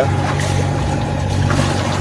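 Sailing yacht's inboard engine running at a steady drone while motoring under way.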